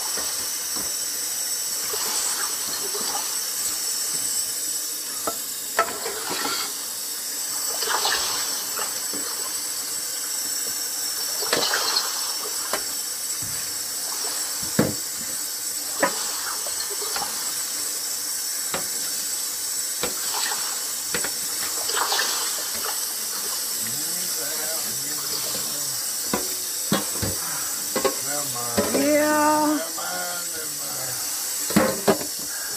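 Steady hiss with a few short clicks scattered through it, and faint voices in the last couple of seconds.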